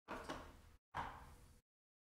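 Two faint knocks about a second apart, each trailing off over about half a second.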